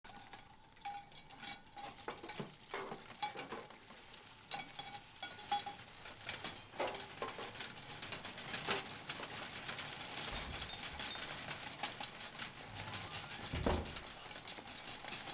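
Butter sizzling in frying pans on gas burners, with many small clinks and scrapes of metal utensils against the pans and a low thump near the end.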